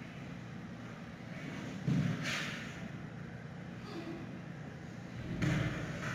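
Giant panda mother and cub play-wrestling in a den corner, with two dull thuds of their bodies bumping the enclosure, about two seconds in and again near the end, each followed by brief scuffling. A steady low hum runs underneath.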